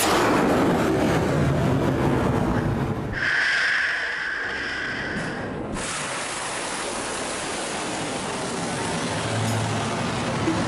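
Rushing roar of a missile launching from a warship, starting loud and easing off to a steadier roar. A steady high tone sounds for about two seconds, starting around three seconds in.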